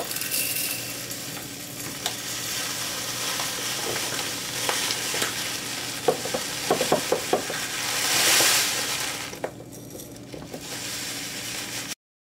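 Dry cereal flakes pouring into a glass jar: a steady rustling hiss with a few light ticks of flakes against the glass past the middle. The pour swells louder about eight seconds in, then eases off.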